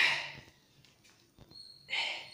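Two forceful breaths or grunts, about two seconds apart, from a man doing push-ups on push-up handles, one with each repetition.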